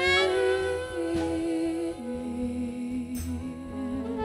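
Live jazz combo playing a slow number: a melody of long held notes that swells at the start and steps down twice, over a soft low bass line with light cymbal washes.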